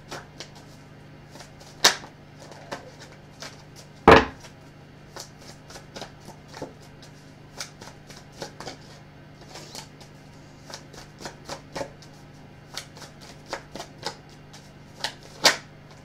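A deck of tarot cards being shuffled by hand: a run of irregular soft clicks and flicks of the cards, with a sharper knock about four seconds in and another near the end, over a faint steady hum.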